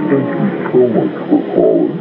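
Lo-fi hip hop track in a break: wavering, sliding tones with no drum beat.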